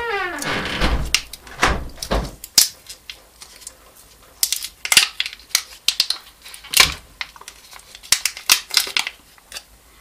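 Thin plastic heat-shrink sleeve being pried and peeled off an 18650 lithium cell: irregular crackles, crinkles and scratches, with a few dull handling knocks in the first couple of seconds.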